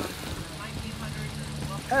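A steady low engine hum from a distant vehicle over faint outdoor background noise, lasting about a second in the middle before speech resumes.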